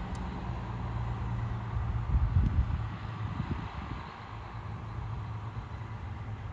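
Fire engine driving off, its engine giving a steady low rumble, with a few heavy low thumps about two to three and a half seconds in. No siren is heard.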